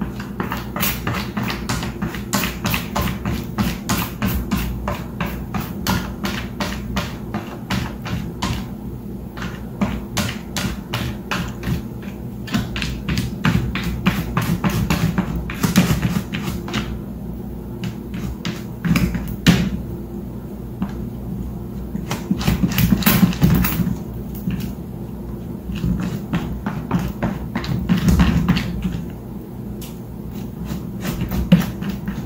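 Cat pawing and scratching at the lid of a plastic storage bin: quick runs of light plastic taps and clicks, several a second, broken by short pauses.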